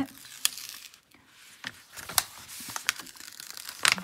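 Protective release film being peeled back from the adhesive surface of a diamond painting canvas: irregular crinkling and crackling, with a few sharp crackles.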